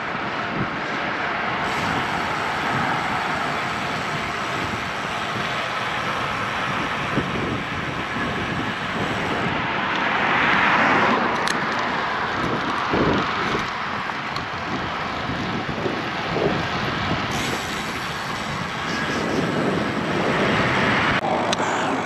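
Wind rushing over the microphone of an action camera on a road bike ridden in gusty wind, mixed with tyre and road noise; the noise swells about ten seconds in.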